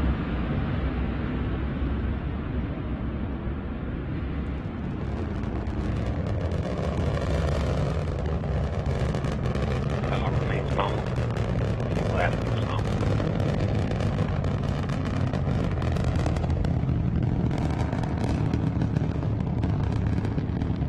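Antares 230 rocket's first stage, two RD-181 kerosene-oxygen engines, firing during ascent: a continuous deep rumble, with sharp crackling that builds up from about five seconds in.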